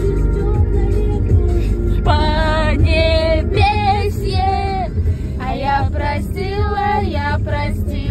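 A song playing in a car's cabin, with several young women singing along loudly from about two seconds in.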